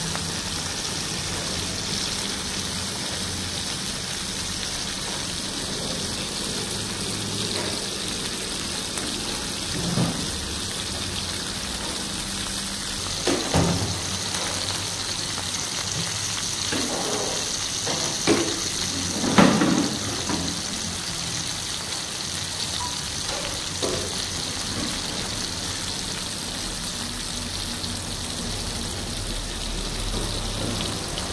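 Masala-coated tuna steaks frying in hot oil: a steady sizzle throughout, with a few louder pops around the middle.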